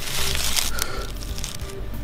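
Dry dead leaves rustling and crackling under a hand in leaf litter, densest in the first half-second, then a few sharp crackles.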